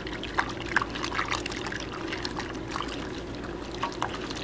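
Clothes being kneaded by hand in soapy water inside a metal ammo can: steady sloshing and squelching with small irregular splashes.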